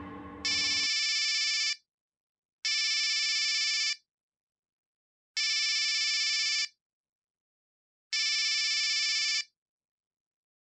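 Mobile phone ringing: four identical electronic rings, each a little over a second long with a slight warble, evenly spaced with silence between.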